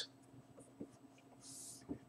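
Faint scratch of a felt-tip marker writing on a white board, with one short stroke about one and a half seconds in.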